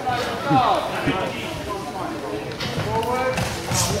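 Voices shouting and calling across a sports hall during a sparring bout, quieter than the nearby coach, with a couple of short sharp knocks late on.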